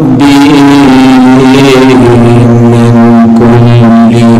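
A man's voice chanting melodically in long held notes through a loud public-address system, pushed near its limit. There are three drawn-out notes, changing pitch about two seconds in and again near the end.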